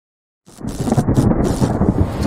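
Deep, thunder-like rumbling sound effect of a logo intro, coming in about half a second in after silence.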